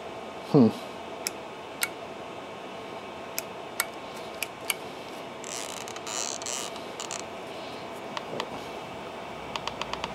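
Scattered light plastic clicks from an NVMPG handheld CNC pendant's buttons and handwheel being tried out, over a faint steady electrical hum. A short rustle comes in the middle, and a quick run of clicks starts near the end.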